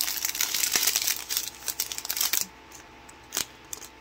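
Small clear plastic bags of diamond-painting drills crinkling as they are handled. The crinkling is busy for the first half and then dies down, leaving one sharp click near the end.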